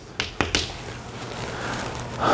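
Chalk striking a blackboard: two sharp clicks in the first half second as a word is finished, followed by steady room hiss.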